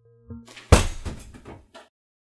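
A hard object smashed down onto a concrete floor: one loud crash about three-quarters of a second in, followed by about a second of rattling, scattering debris that dies away.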